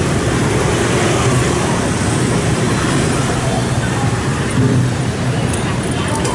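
Steady street traffic noise, mostly the engines of passing motorbikes, with a strong low hum.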